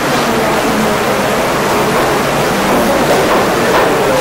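Steady loud hiss and rumble of room noise picked up by the courtroom microphones, with faint low murmuring voices underneath.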